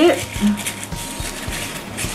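Tissue paper rustling and crinkling as it is handled and pulled apart by hand.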